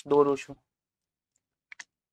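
A man's voice speaks briefly, then after a pause two quick, faint clicks of a plastic marker cap being handled near the end.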